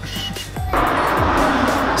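Background music with a steady low beat. About two-thirds of a second in, a loud, even rushing noise cuts in suddenly and holds, an edited-in sound effect laid over the music.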